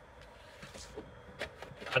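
Quiet background with a few faint, soft clicks and rustles of handling as a man reaches into a car.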